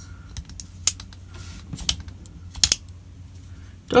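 Ozark Trail folding knife with a ball-bearing pivot being worked open and shut by hand: a few sharp clicks of the blade snapping into place, about one a second, the last two close together.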